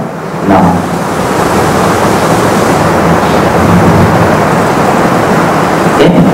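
A steady, loud rushing noise with no pitch or rhythm, starting about a second in after one spoken word.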